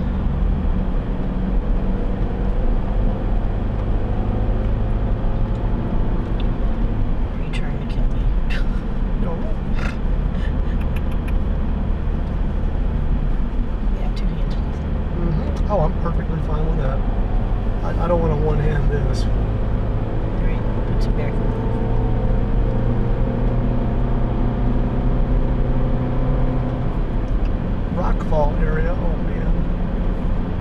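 Car engine and tyre noise heard from inside the cabin as the car climbs a mountain grade: a steady low drone whose engine note shifts a couple of times partway through.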